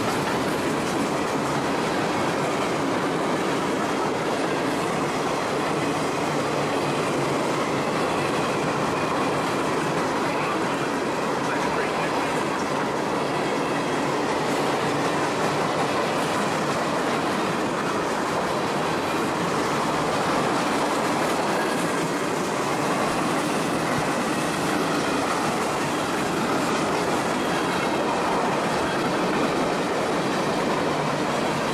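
Long CSX mixed freight train rolling past: a continuous, steady clatter and rumble of railcar wheels on the rails, with a faint high ringing from the wheels.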